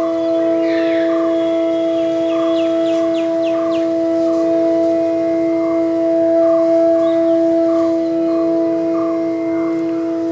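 Bansuri bamboo flutes sustaining one long, steady note in the alap of raag Parmeshwari. Short high chirps sound about a second in and again around three seconds in.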